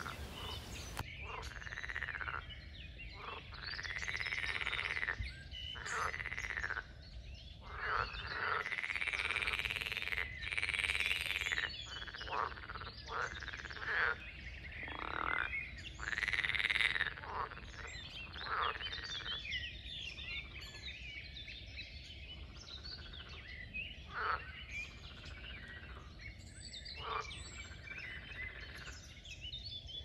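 Frogs croaking in a pond: a run of drawn-out croaks one after another through the first half or so, then only now and then.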